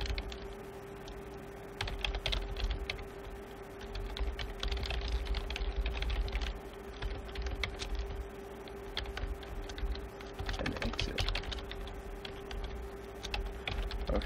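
Typing on a computer keyboard: short runs of keystrokes with brief pauses between them, over a steady low hum.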